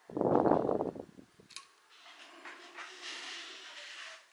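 Handling noise from fingers rubbing against the camera right at its microphone, a loud rumbling scrape lasting about a second. A single click follows, then a soft rustle.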